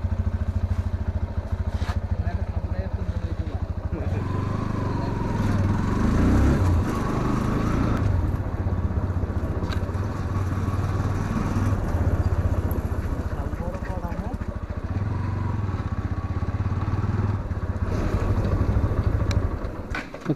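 Motorcycle engine running close to the mic, idling evenly for the first few seconds, then pulling away and riding slowly with the engine note rising and falling.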